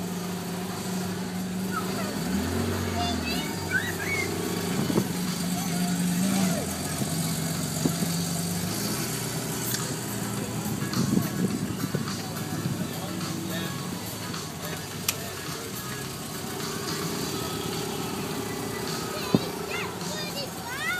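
Crowd chatter with music playing over it and a car engine running.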